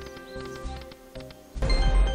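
White Rabbit video slot game audio: steady game music with light clicks as the reels spin and drop. About a second and a half in, a louder, deep win sound starts as a winning spread of aces lands.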